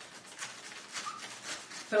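Chef's knife sawing through the tough top of a raw artichoke on a wooden cutting board: a run of soft, irregular rasping strokes.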